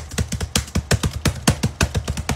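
Fast typing on a laptop keyboard: a quick, uneven run of sharp key clicks, about seven or eight a second, over a low steady hum.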